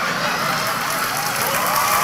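Audience applauding steadily, with faint voices underneath.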